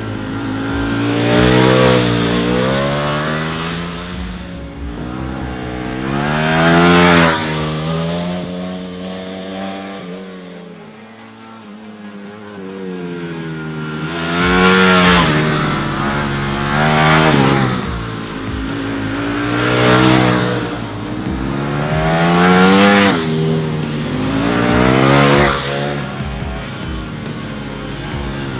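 Ducati Panigale V4's 90-degree V4 engine revving hard through the corners, its pitch climbing under acceleration and dropping back with each shift or pass, several times over, with a quieter lull about halfway.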